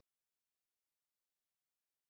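Complete silence: the sound track is blank, with no room tone.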